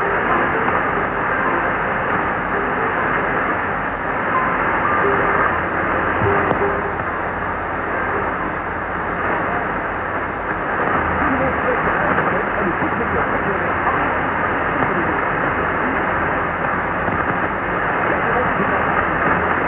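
Weak AM shortwave signal of Radio Congo on 6115 kHz, heard through a communications receiver: a faint voice buried in steady static and hiss. The sound is narrow and muffled, with nothing above the receiver's AM filter.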